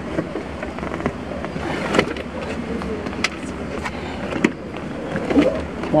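Scattered knocks and clicks of seats being handled and taken out inside a small minivan, over a steady low rumble.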